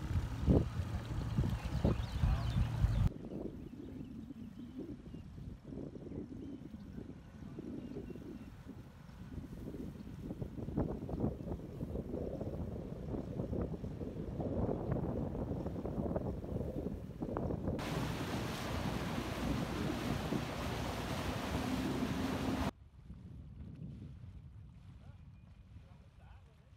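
Small outboard motor running on a jon boat under way on a river, mixed with wind noise on the microphone. The sound changes abruptly three times.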